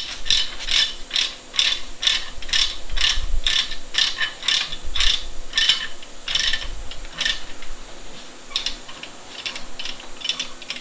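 Ratchet tie-down being cranked tight, a steady run of sharp ratcheting clicks about two a second that thins out after about seven seconds.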